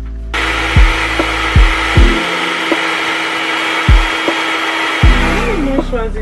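A handheld hair dryer blowing steadily. It switches on abruptly just after the start and dies away shortly before the end, over background music with a regular heavy kick drum.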